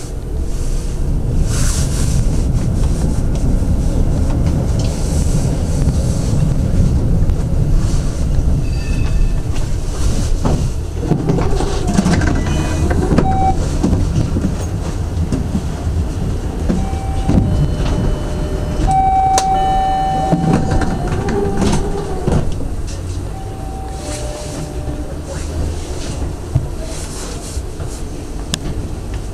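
SGP E1 tram running along its track: a steady low rumble of wheels on rails. Through the middle stretch, several short steady whining tones come and go, and the sound eases slightly in the last third.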